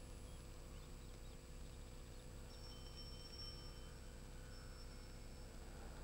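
Very quiet background: a faint steady low hum, with a faint high thin tone from about two and a half seconds in to nearly four seconds.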